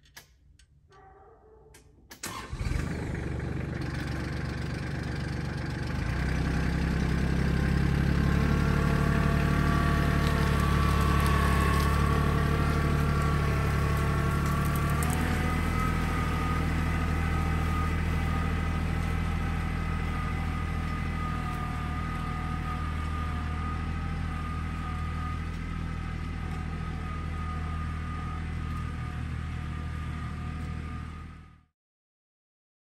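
Compact tractor's engine starting about two seconds in, then running and throttling up a few seconds later as the tractor pulls away dragging a log on its three-point hitch. The engine note drops a little about halfway through and then holds steady.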